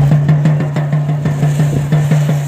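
A ground fountain firecracker (flower pot) burning on sand. It gives a loud, steady low rumble that pulses rapidly, about five times a second.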